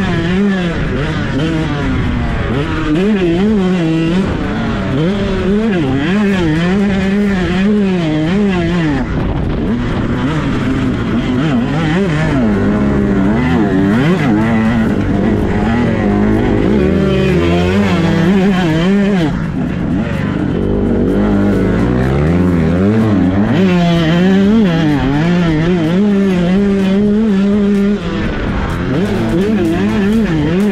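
KTM SX 125 single-cylinder two-stroke motocross engine ridden hard at full throttle, its pitch climbing and dropping over and over, heard from on the bike.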